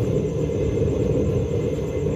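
Homemade waste-oil burner heater running at full fire, a steady deep sound like an aircraft, loud enough to be heard some 20 metres away.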